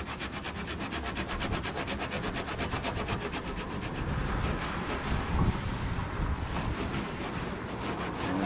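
A folded towel rubbed briskly back and forth over an aluminum diamond-plate toolbox lid, in quick even strokes several times a second. It is buffing off the black residue left by the metal polish.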